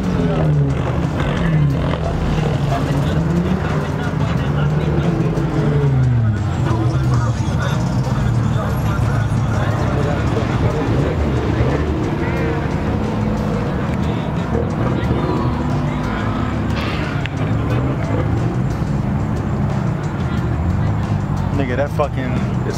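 Background music with a continuous vocal line and a steady beat.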